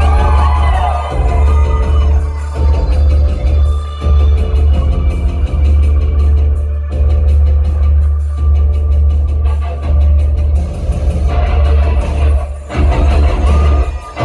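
Live rock band with electric guitars playing loudly over a heavy bass. The music drops out briefly near the end.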